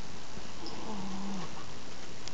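A cat's low, drawn-out yowl, held on one pitch for about a second and dropping slightly as it ends.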